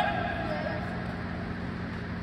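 A man's voice trailing off in the first moment, then the steady low hum of a large indoor gym hall.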